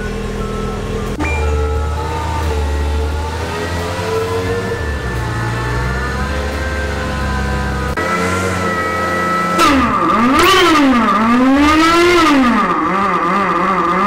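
Subaru Vivio RX-R's small supercharged four-cylinder engine running at a steady idle on a hub dyno, then, from near the ten-second mark, revved up and down two or three times in quick blips.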